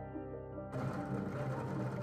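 Soft background music, then about three-quarters of a second in a bench drill press starts suddenly, its bit drilling into the edge of a wood-and-epoxy-resin pendant, with the music continuing under it.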